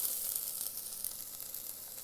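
Chopped onions frying in oil in an Instant Pot's stainless steel inner pot on sauté mode: a soft, steady sizzle with faint crackles that grows slightly quieter. The onions have just turned translucent.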